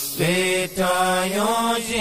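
A single voice chanting in long, held notes on a near-steady pitch, broken by short pauses about half a second in and again near the end.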